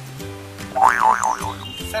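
Background music with a steady bass line, and about a second in a cartoon 'boing' sound effect whose pitch wobbles up and down for about half a second.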